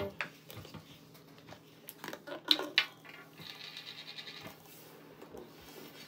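Plastic corn syrup squeeze bottle being pressed into the neck of a plastic water bottle. There are two sharp clicks about halfway through, then a short buzzing sputter of about a second as air and syrup push through.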